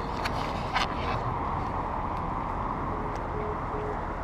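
Steady low rumble and hiss of parked diesel trucks at a lorry park, with a few light clicks in the first second.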